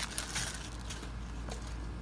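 Faint handling noises: soft rustling and a few small clicks from a plastic bottle of micellar water and a cotton pad being handled, over a low steady hum.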